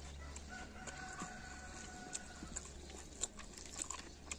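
A rooster crowing faintly: one long held crow beginning about half a second in and lasting about two seconds. Small clicks of fingers mixing rice on a plate run throughout.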